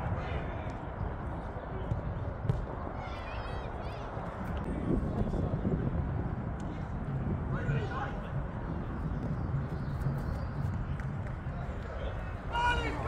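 Open-air football pitch ambience: a steady low rumble of wind on the microphone, with faint, distant shouts from players a few times.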